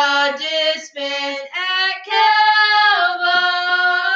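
Two women singing a hymn together in sustained sung phrases, with brief pauses between lines.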